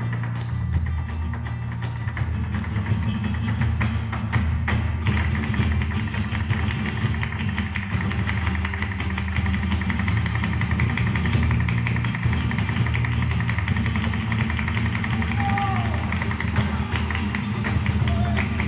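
Live flamenco taranto: two flamenco guitars playing, with a dancer's rapid heel-and-toe footwork on a wooden stage and palmas hand-clapping, a dense run of sharp clicks that grows busier about five seconds in.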